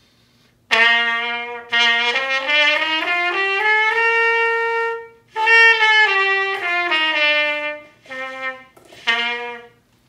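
Cornet playing a scale: it steps up note by note from a long first note to a held top note an octave higher, then steps back down, ending with two short notes. The notes come from its three valves changing the length of the horn, and so its resonant frequencies.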